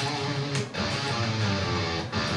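Schecter Hellraiser C1 electric guitar in drop D tuning, a run of single notes picked on the low sixth string. The notes climb the D harmonic minor scale, with its sharpened seventh.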